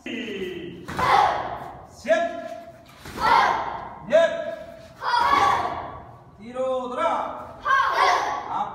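Voices in a taekwondo class shouting counts and kihaps about once a second, each shout starting sharply with a thud, echoing in a large hall.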